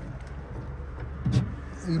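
Steady low rumble inside a small electric car's cabin, with a short voice sound and a single sharp click a little past halfway.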